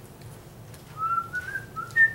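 A person whistling idly: the first second is only quiet room hum, then a few short whistled notes that step upward in pitch.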